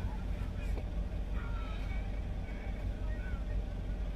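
Steady low rumble of a car heard from inside the cabin, its engine running, with a couple of faint brief vocal sounds.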